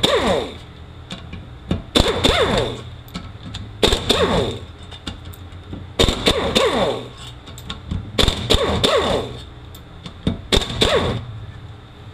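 Hammer blows on a hand impact driver, about one every two seconds with a metallic ring after each, driving out stubborn transmission bolts that don't want to break loose.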